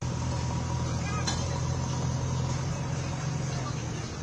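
Steady low hum of an engine running, with faint distant voices over it.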